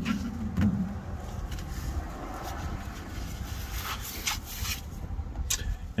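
Gloved hand turning a FASS fuel filter canister back onto its housing: scattered clicks and rubbing over a low, steady rumble.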